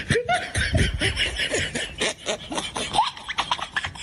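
People laughing in short, rising and falling bursts over a rough background noise.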